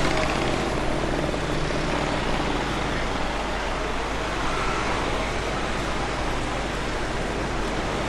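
Steady, even drone of road traffic, with no single vehicle standing out.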